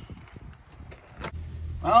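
A few faint clicks and knocks, then, about a second in, a steady low hum from the pickup cab's heater blower fan running with the engine off.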